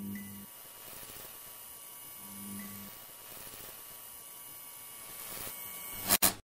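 Faint, steady electrical hum with hiss. A low hum swells briefly at the start and again about two seconds in.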